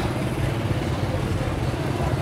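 Steady low rumble of street traffic, an even engine hum with no sudden events.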